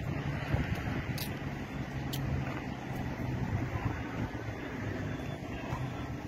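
A motor vehicle engine idling steadily, a low even hum, with a couple of faint clicks about one and two seconds in.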